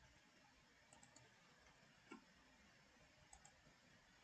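Near silence: faint room tone with a few soft computer mouse clicks, a small cluster about a second in, a slightly fuller one just after two seconds, and a pair near the end.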